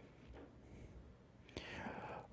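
Near silence: room tone, then a faint whispered voice near the end.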